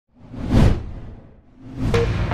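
Whoosh sound effect of a logo intro: a swell that peaks about half a second in and fades away, then a second rising whoosh leading into electronic music at the very end.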